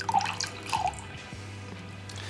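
Red wine poured from a bottle into a glass, with two quick glugs in the first second, over soft background music holding sustained low notes.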